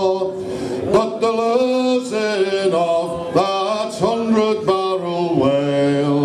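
A group of men singing a traditional whaling ballad unaccompanied, in harmony.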